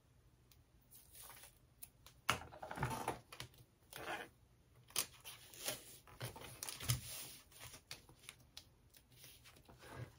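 Double-sided tape being unrolled and pressed along waterproof canvas beside a zipper: faint, scattered tearing and rustling with small clicks, the loudest strokes about two and a half, five and seven seconds in.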